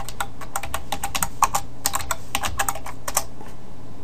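Computer keyboard keys clicking in a quick run of keystrokes as a terminal command is typed, stopping a little after three seconds in.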